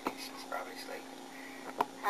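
Faint, low murmured speech with a steady hum underneath, and a sharp click at the start and another near the end.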